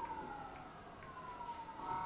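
A faint wailing tone that slides slowly down in pitch, then starts a little higher and slides down again.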